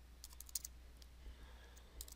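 Faint keystrokes on a computer keyboard, a quick run of key taps mostly in the first second.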